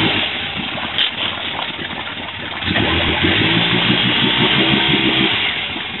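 Polaris Ranger utility vehicle's engine running under a steady rushing noise, revved up a little under three seconds in and held at a steady pitch for about two and a half seconds before easing off, as the vehicle strains in a water crossing it cannot get through.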